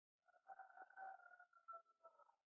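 Near silence: room tone with a faint, steady whine through most of it.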